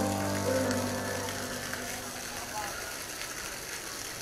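Small fountain jet splashing steadily onto a bed of pebbles: a steady hiss of falling water.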